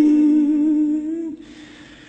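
A Buddhist monk's voice chanting a Khmer sung lament, holding one long steady note that fades out a little over a second in. A quiet pause follows.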